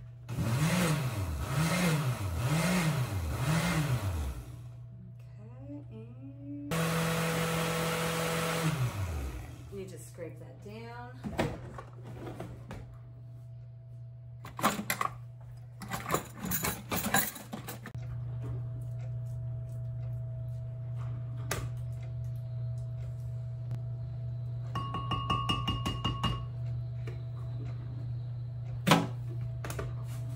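Countertop blender pulsed four times in quick succession, the motor spinning up and back down with each pulse. It then runs for about two seconds and winds down, and later runs steadily again, blending egg-and-milk batter.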